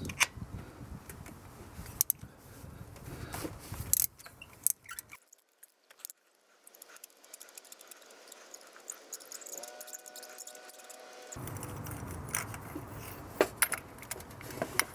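Scattered metallic clicks and clinks of a swivel spark plug socket and extension being worked in the spark plug well to loosen the old plug, with a quieter stretch in the middle.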